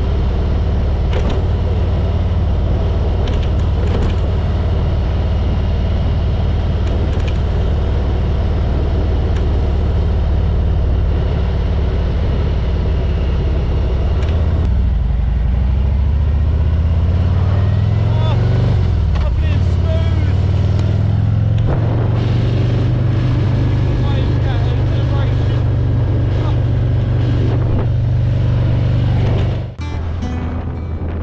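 Harley-Davidson Road King's V-twin engine running on the road with wind noise on the microphone. Around the middle the engine note slides down and back up as the bike changes speed, then settles into a steady, higher note. The sound cuts off abruptly just before the end.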